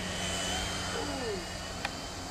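Whine of an E-flite Blade mSR micro electric RC helicopter's motors and rotor in flight: a thin high tone that sags slightly in pitch, with a sharp click near the end.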